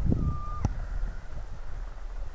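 Wind buffeting the microphone as a low rumble, swelling at the start. A short, steady high beep sounds about a third of a second in and ends with a sharp click.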